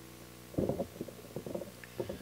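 Microphone handling noise: low, muffled bumps and rumbles in two short clusters over a steady sound-system hum.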